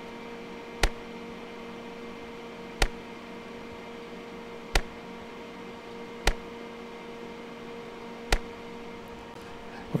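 Cornet ED88T RF meter's audio output clicking five times, about two seconds apart, each click an RF pulse of 50 microseconds that it detects, over a steady hum.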